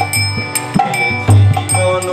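Harmonium playing a devotional bhajan melody in held reedy chords, over a steady tabla-style drum beat of deep strokes and sharp hits.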